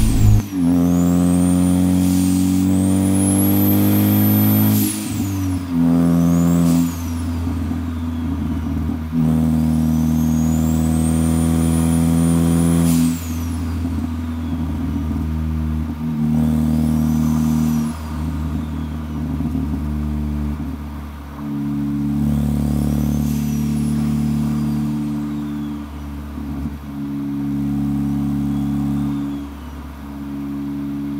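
Ford Focus ST's turbocharged 2.0 EcoBoost four-cylinder, fitted with a big G25-550 turbo and heard from inside the cabin, pulling hard under boost several times. The engine note climbs and then drops abruptly at each shift. A high whine rises and falls with each pull.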